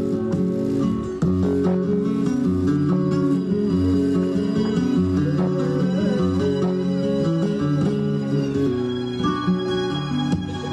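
Live flamenco music led by acoustic guitar, playing a continuous run of plucked and strummed notes.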